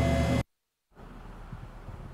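A steady low hum of indoor machinery noise, cut off abruptly just under half a second in, then about half a second of dead silence, followed by faint outdoor background noise with a low rumble.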